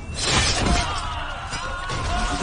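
A loud shattering crash, a fight sound effect, lasting under a second, followed by dramatic background music with a wavering held melody.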